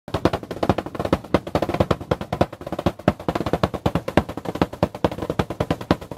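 Fast drumming: a dense, unbroken run of drumstick strokes on a foil-covered drum, many hits a second.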